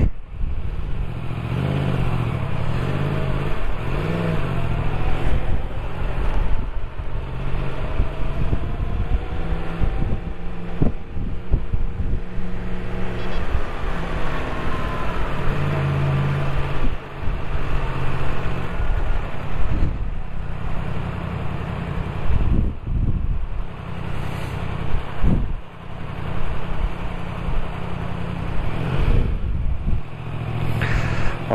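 Motorcycle engine running at low speed in city traffic, its pitch rising and falling a few times as it slows and pulls away, with a few brief knocks.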